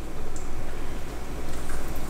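Coconut-panko-breaded snapper pieces sizzling steadily in warm oil in a frying pan on low heat.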